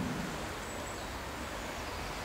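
Steady outdoor background noise: a soft, even hiss with no distinct events, in a pause between spoken phrases.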